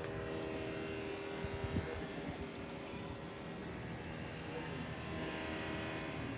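A steady mechanical hum holding a few low tones, over a faint even haze of outdoor noise.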